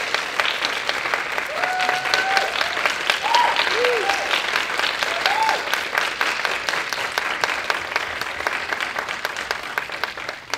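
Audience applauding steadily for a curtain call, with a few short voice calls from the crowd in the first half. The clapping thins out toward the end.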